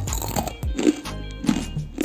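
A crisp fried rice-flour butter chakli crunching near the start, over background music with a steady beat.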